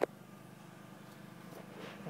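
Faint, steady background hum inside a car cabin, with a slight swell near the end.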